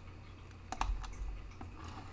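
Clicking at a computer: two sharp clicks close together a little under a second in, then a few fainter ticks.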